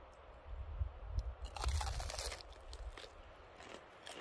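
A person biting into and chewing a crusty bread roll close to the microphone, with crunching loudest about one and a half to two and a half seconds in, then lighter chewing crackles.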